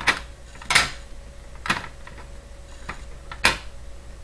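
Small steel hardware (washers, nuts and a threaded rod) being handled and set down on a wooden tabletop: five sharp clicks and knocks, the loudest about a second in and near the end.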